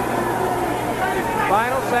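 Arena crowd murmur under a television boxing broadcast, with a commentator's voice coming in near the end.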